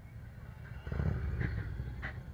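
Large touring motorcycle's engine rumble, swelling about a second in as it rides through a turn, then staying loud.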